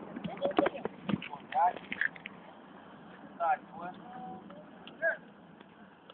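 Voices of people talking and calling out, too indistinct to make out words, with a few short clicks in the first second.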